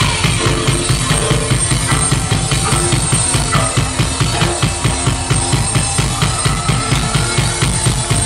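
A live rock band playing, with a drum kit keeping a steady fast beat under synthesizer keyboards.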